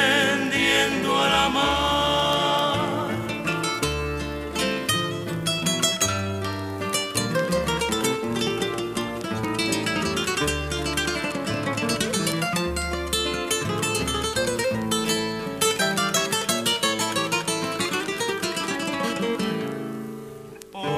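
Instrumental guitar break of a bolero trio: acoustic guitars playing rapid plucked runs over steady bass notes. A held sung note with vibrato fades out in the first few seconds.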